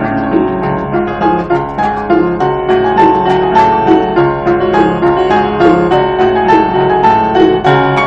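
Grand piano played live: a melody line over sustained lower chords, the notes following one another steadily.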